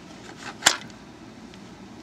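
A single sharp click about two-thirds of a second in, from a spring-hook test probe clip being worked off a terminal on the circuit board.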